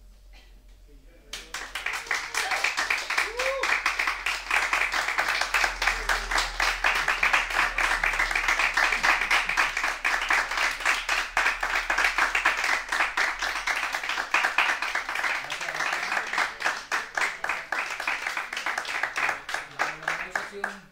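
Audience applauding, starting about a second in and keeping up steadily, with a few voices mixed in.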